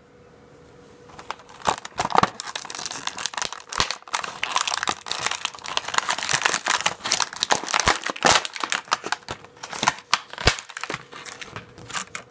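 Plastic blister packaging being torn open and crinkled by hand: a dense run of crackles, snaps and rustles that starts about a second and a half in and dies down near the end.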